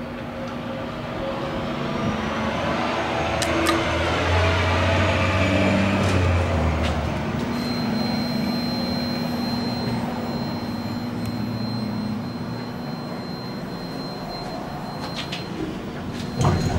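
Vintage Otis elevator car travelling: a steady machinery hum with the cab rumbling and rattling. The sound swells in the middle, a thin high whine sets in about halfway, and a few clicks come near the end.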